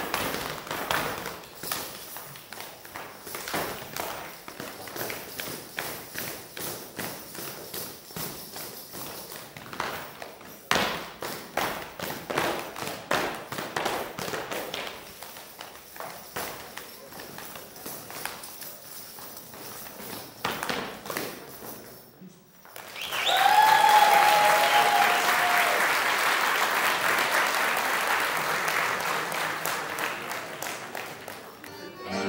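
Men's folk step dance with no music: boots stamping and being slapped on a wooden floor in quick, irregular strokes. The strokes stop sharply about 22 seconds in, and after a brief hush the audience breaks into loud applause with a few whistles.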